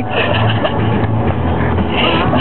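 Steady low drone of road and engine noise inside a moving van's cabin, with bursts of boys' laughter in the first half.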